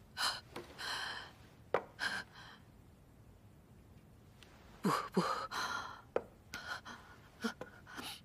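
A woman's short, uneven gasps and breaths, several of them catching briefly in the voice, as she takes in upsetting news.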